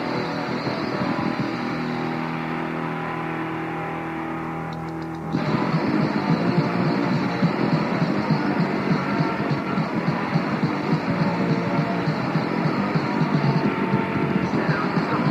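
Lo-fi cassette recording of a punk rock band: a track opens on a sustained, droning distorted chord, and about five seconds in the full band comes in louder with drums, bass and guitar.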